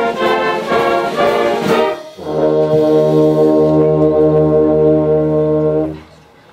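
Concert band with prominent brass playing: quick rhythmic notes for about two seconds, then a brief break and a long held full chord that the band cuts off together at the end.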